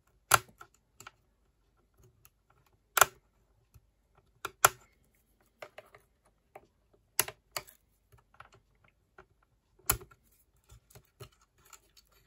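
Small plastic clicks and light scraping from a plastic pick prying at a cable connector inside an Apple AirPort Extreme router's plastic case. A handful of sharp clicks come at irregular intervals, with fainter ticks between them.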